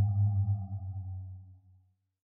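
Low electronic drone with a thin higher tone, the tail of a short title sting, fading out to silence about a second and a half in.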